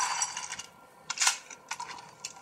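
Metallic clatter of a metal object hitting a wooden floor in a film's soundtrack, played through a portable DVD player's small, tinny speaker: a quick run of clinks at the start and one sharp hit just past the middle.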